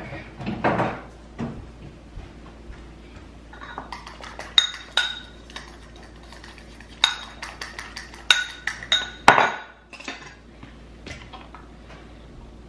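Metal fork clinking and scraping against a ceramic bowl while stirring, in runs of quick ringing clinks, with one louder knock about nine seconds in.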